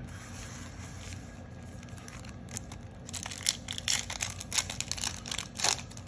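Foil-lined trading card booster pack crinkled in the hands and torn open. The crackling starts about halfway through, as a dense run of sharp crinkles and rips.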